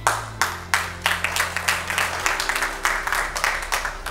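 An audience applauding: many hands clapping irregularly, starting suddenly and stopping just before the voice returns. Soft background music with steady low chords plays underneath.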